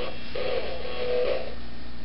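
Tinny electronic tones from a plush talking toy's small sound-chip speaker: a couple of held notes of its built-in tune.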